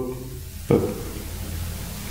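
A man breathing hard under exertion: from under a second in, a long, steady, noisy exhale with a low strain in it as he holds a side-lying leg raise.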